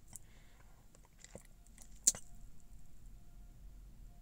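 A few faint, scattered clicks and ticks over a low hum, with one sharper click about two seconds in.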